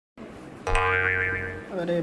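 A cartoon-style 'boing' sound effect added in editing: one held, buzzy tone lasting about a second, then cutting off.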